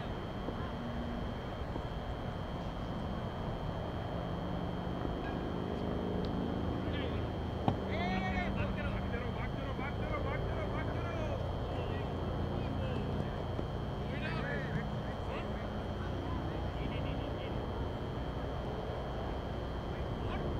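Players' distant shouts and chatter on a cricket field over a steady background hiss and a constant high tone, with one sharp knock a little under 8 seconds in.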